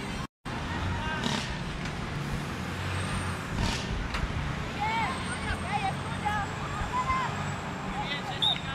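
Open-air field hockey pitch ambience: a steady low hum under a noisy background, with short shouts from players in the second half. The sound cuts out completely for a moment just after the start.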